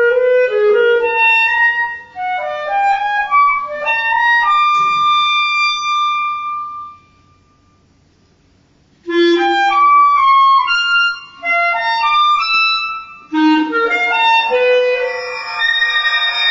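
Solo clarinet playing quick, jumping phrases of short notes, breaking off for about two seconds in the middle before starting again. Near the end several pitches sound together.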